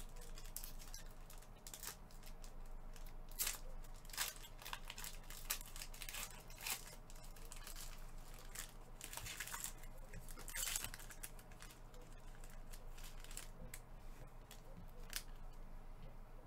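Foil and plastic card wrapping crinkling and tearing as it is pulled open by nitrile-gloved hands: scattered short crackles, a few of them louder.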